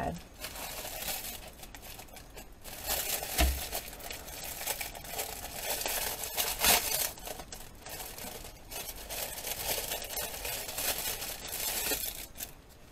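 Clear plastic stamp packaging crinkling and rustling in irregular bursts as it is handled and unwrapped.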